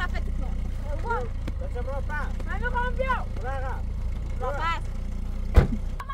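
A car engine idling with a steady low rumble under several raised voices talking. One sharp bang, like a car door slamming, comes about five and a half seconds in.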